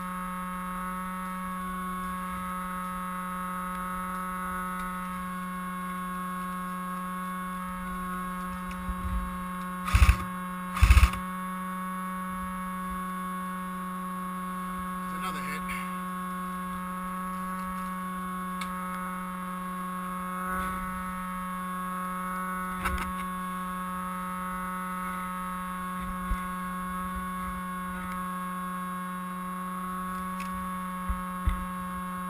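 A steady electrical hum with a constant whine above it. About ten seconds in come two loud sharp knocks a second apart, with a few fainter ticks later.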